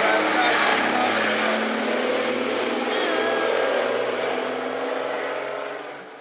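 A city bus driving past close by, its engine running with a steady low hum over road noise. The sound fades away near the end.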